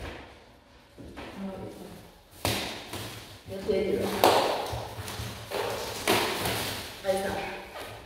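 A large wooden wardrobe panel being handled and shifted on a hard floor: a few knocks and thuds with scraping between them, the loudest about four seconds in, with voices in the room.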